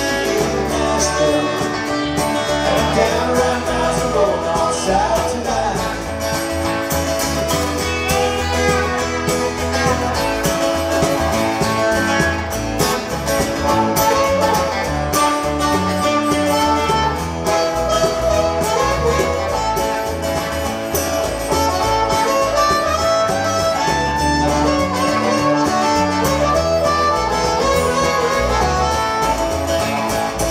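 Live roots-rock band in an instrumental break: a blues harmonica solo with bending notes over electric guitar, bass guitar and hand percussion.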